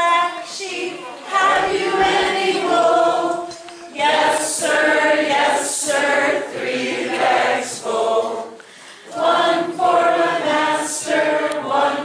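Unaccompanied singing voice, a woman's, in sung phrases with short pauses between them.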